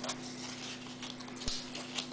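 Handling noise as a 45 rpm single in its paper sleeve is lifted and moved: light paper rustling and clicks, a sharp knock about one and a half seconds in followed by a brief rustle, over a steady low hum.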